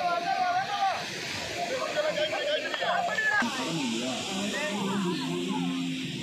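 Many children's voices chattering and calling out over one another, with background music that drops away about a second in. A steady hiss joins about halfway through.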